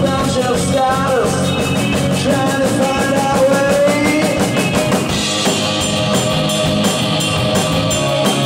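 Indie rock band playing live, with drum kit and electric guitar. A melodic line bends in pitch over the first few seconds, then the band comes in fuller with steady cymbal strokes about five seconds in.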